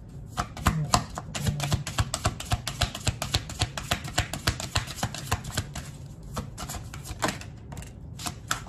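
Tarot deck being shuffled by hand: a quick run of light card clicks, several a second, that thins out around six seconds in and picks up briefly again before the end.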